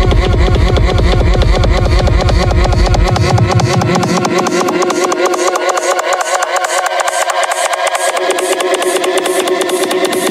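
Breakbeat DJ mix with a fast, steady drum pattern. About three seconds in, the bass is filtered out while a buzzy synth rises slowly in pitch, building up toward a drop.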